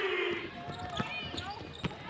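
Basketball bouncing on a hardwood court: a few separate bounces, after a voice trails off at the start.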